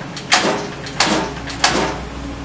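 Three short, sharp metallic rasps about two thirds of a second apart as the Royal Enfield Bullet's engine is forced round by hand, moving only a tiny bit each time: something is jammed inside the motor.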